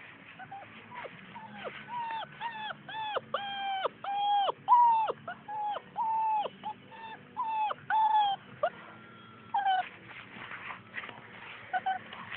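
Blue Great Dane puppy whining in a run of short, high-pitched cries, about two a second, that stop near two-thirds of the way through, with one more cry after a short pause.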